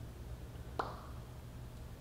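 Quiet room tone with a steady low hum, broken by one short faint click a little under a second in.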